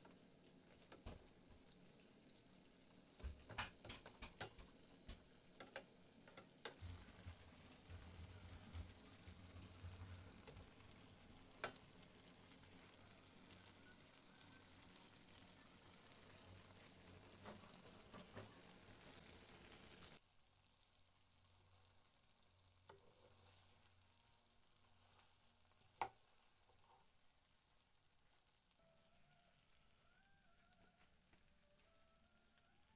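Chicken wings sizzling faintly in a thick ketchup, honey and margarine sauce in a frying pan, with a spoon clicking against the pan now and then, several clicks close together a few seconds in. About two-thirds of the way through the sizzle drops away suddenly to a fainter hiss, with one sharp click near the end.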